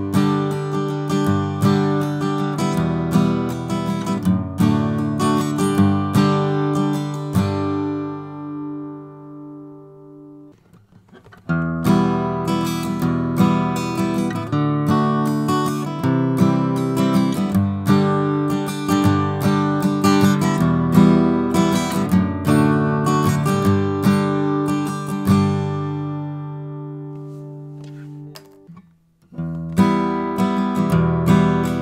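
Acoustic guitar strummed with a thick flatpick: a short chord passage that ends on a chord ringing out and fading about eight to ten seconds in. After a brief silence the passage is played again with a different pick and fades out near the end, and strumming starts once more just at the close.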